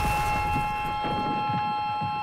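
The rumble of a blast fading away steadily, with a held high chord ringing over it.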